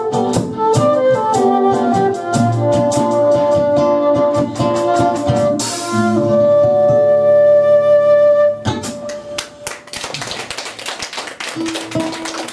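Silver concert flute playing a melody over a rhythmic band accompaniment, in a live acoustic-rock performance. The flute holds one long note from about six seconds in. The music drops away at about nine seconds, leaving a quieter stretch of rapid irregular clicking.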